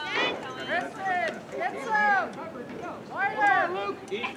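Indistinct, high-pitched voices of children calling out and chattering, with no clear words.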